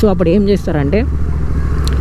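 Royal Enfield Continental GT 650's parallel-twin engine running steadily at low riding speed, with a man talking over it in the first second; the engine's even hum is heard alone for the second half, with a light rush of road and wind noise.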